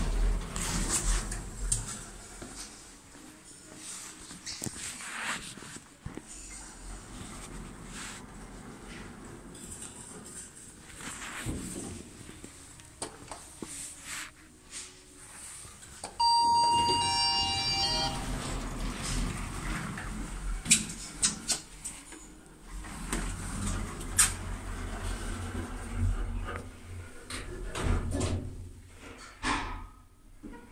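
Thyssenkrupp passenger lift: its sliding doors moving, with knocks and clicks. About halfway through, a short electronic chime of a few steady tones lasts about two seconds as the landing call button is pressed.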